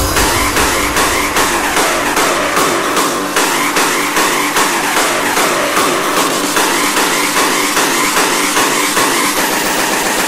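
Hardstyle electronic dance track: a driving, distorted synth pattern of short repeating upward sweeps. The heavy bass drops away about half a second in, and a long rising sweep builds through the last few seconds.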